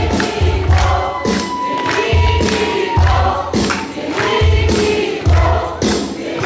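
A live band playing a worship song, with voices singing over a steady drum and bass beat.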